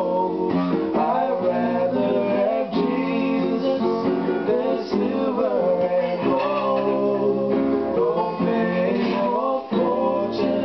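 Two acoustic guitars and a ukulele strummed together while two men sing a gospel song.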